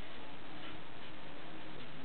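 Felt-tip marker writing on paper, faint scratches of the strokes over a steady background hiss.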